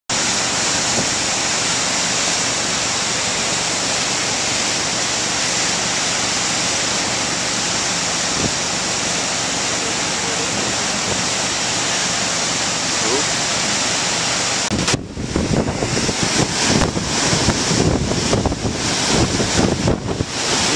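Steady roar of a flood-swollen river rushing through rapids. About 15 seconds in it gives way abruptly to uneven, gusty wind buffeting the microphone.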